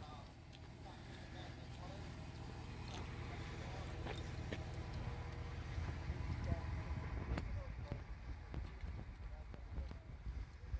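Wind rumbling on a handheld phone's microphone, growing louder toward the middle, with scattered small clicks of handling.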